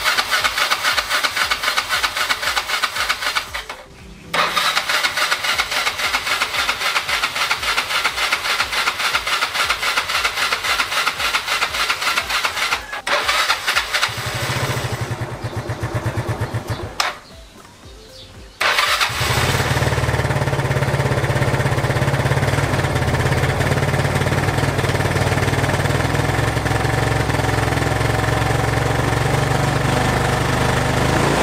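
Yamaha Mio Sporty scooter's single-cylinder four-stroke engine being cranked over in several long spells while it fails to fire, its freshly cleaned carburettor just primed with fuel. Near two-thirds of the way through it catches and settles into a steady idle.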